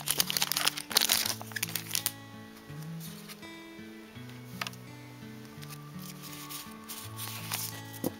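A foil Pokémon booster-pack wrapper crinkling as it is opened by hand for about the first two seconds. Quiet background music with a simple, slowly stepping melody plays throughout.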